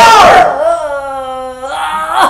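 A woman crying out a loud, exaggerated "Hallelujah", the last syllable held as one long, slightly falling wail for over a second.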